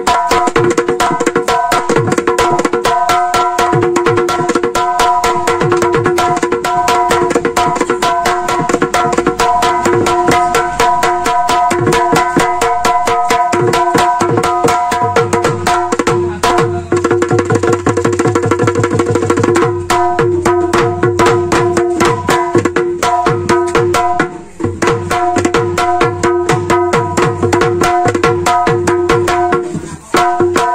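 Bihu dhol, the Assamese double-headed barrel drum, played fast by hand: a dense run of rapid strokes with ringing pitched tones. Deeper bass strokes come in for a few seconds in the middle, and there is a brief drop about five seconds before the end.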